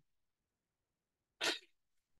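Near silence, then one short, sharp breath sound from the speaker about a second and a half in, just before she speaks again.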